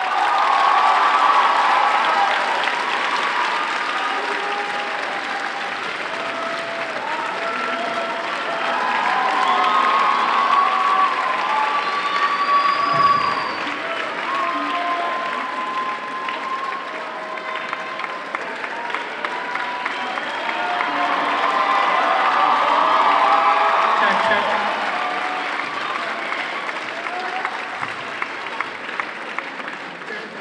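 Concert audience applauding and cheering, with shouts and whoops over the clapping, swelling and easing a few times.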